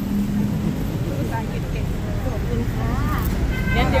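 Road traffic on a city street: a steady low rumble of passing cars and motorbikes, with voices talking quietly over it that grow louder near the end.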